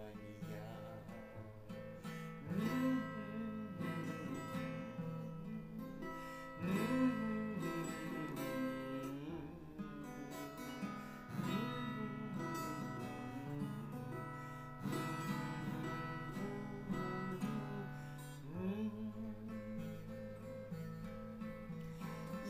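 Instrumental break in a slow waltz song: acoustic guitar playing over steady held backing tones, without vocals.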